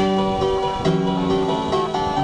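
Electric guitar playing slow, sustained chords in a song intro, a new chord struck about a second in.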